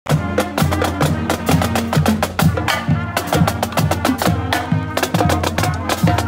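Marching band drumline playing a cadence: rapid snare drum strokes over a steady beat of bass drums.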